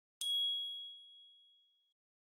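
Logo chime of a streaming-service ident: a single bright ding about a quarter second in, ringing out and fading away over about a second and a half.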